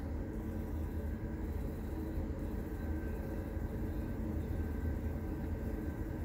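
Ceramic clay 3D printer running as it prints: a steady low machine hum with faint steady high tones over it.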